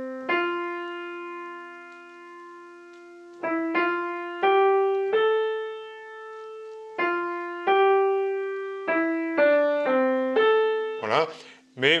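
Piano melody played one note at a time with the right hand, straight and evenly in time with the notes exactly in place, with no swing. Long held notes open the phrase, and shorter notes follow in the second half.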